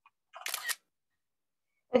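iPad screenshot sound: a single short camera-shutter click about a third of a second in.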